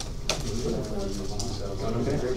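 Classroom chatter: several voices talking at once, low and indistinct, with a single sharp click or tap about a third of a second in.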